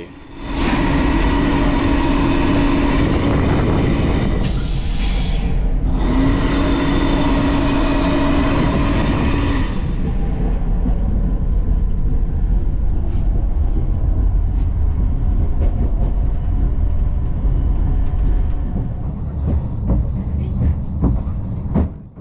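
Sensor hand dryer in a train toilet, blowing in two bursts of a few seconds each with a short break between: a steady motor hum under rushing air. It was set off together with the sensor tap, so it blows water over the user. After about ten seconds only the high-speed train's steady running rumble is left.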